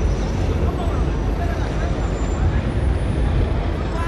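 Busy city-square ambience dominated by a steady low rumble of traffic, with a bus engine among it, and faint distant voices.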